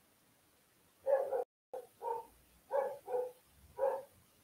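A dog barking, about seven short barks, some in quick pairs, spread through the last three seconds.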